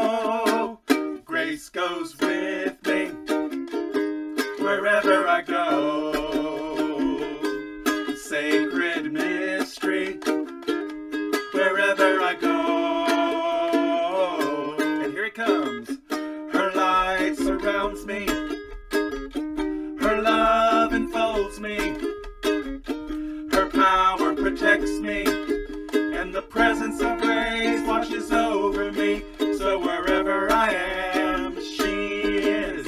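Ukulele strumming chords while voices sing a devotional sing-along song with it.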